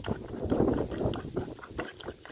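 Raw eggs being beaten with a wooden spoon in a clay bowl: a run of quick, irregular wet strokes and scrapes.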